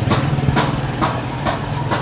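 An engine idling steadily, with a regular tick about twice a second over its low hum.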